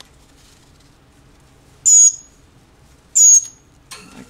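Two short, high-pitched begging calls from a fledgling songbird, about a second and a quarter apart, the second near the end: a hungry young bird asking to be fed.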